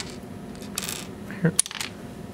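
Small metal SMA calibration connector parts being handled: a click, a short scrape, then a quick cluster of light metallic clicks and clinks.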